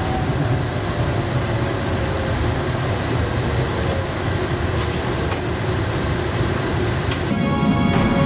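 Airport shuttle train running, heard from inside the car: a steady rumble and hiss with a faint whine. Music starts about seven seconds in.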